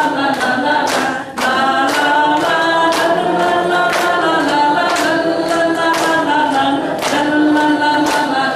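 A group of voices singing a worship song together over a steady beat of about two or three sharp strokes a second, with a brief break a little over a second in.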